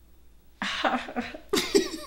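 Men bursting into laughter about half a second in, with a loud, breathy, cough-like burst near the end.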